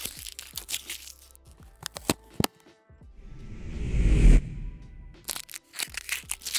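Cardboard flaps and foam packing peanuts crackling and crinkling as a parcel is opened by hand. In the middle, a rising whoosh in the background music swells for about a second and a half and cuts off sharply, and then the crinkling starts again.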